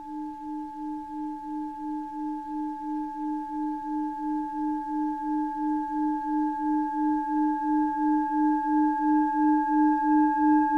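Singing bowl ringing with a sustained tone that wavers in a steady beat of about three pulses a second, with fainter higher overtones, growing gradually louder.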